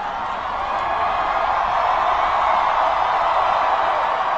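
A very large crowd cheering, a dense, steady wash of many voices that grows louder about a second in.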